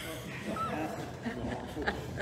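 Low, indistinct talk, with a brief squeak about half a second in and a sharp tap near the end.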